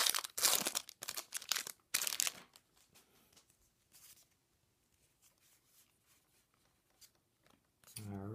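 Foil booster-pack wrapper of Pokémon trading cards being torn open and crinkled for about two and a half seconds, then much quieter, faint handling of the card stack as the cards are slid out and leafed through.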